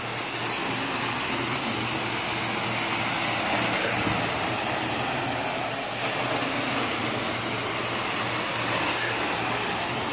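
Carpet-cleaning extraction wand of a Devpro machine drawn across carpet: a steady rushing hiss of suction pulling air and water through the wand head and hose.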